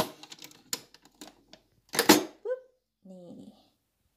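The capsule lid of a Chicco d'Oro capsule coffee machine is pushed down and latched shut over a capsule: several plastic clicks and rattles, with the loudest snap about two seconds in.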